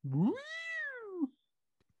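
A single meow-like cry, about a second long, that slides up in pitch and then back down.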